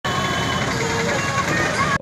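Outdoor street ambience: steady traffic noise mixed with indistinct voices, cutting off abruptly at the end.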